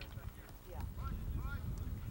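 Wind rumbling on the microphone beside a polo field, with a few short shouted calls from the riders about a second in and scattered hoof thuds from the ponies moving about.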